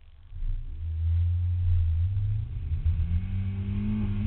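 Nissan Silvia S13's engine launching off the autocross start: the engine comes in loudly about half a second in and then climbs steadily in pitch as the car accelerates hard.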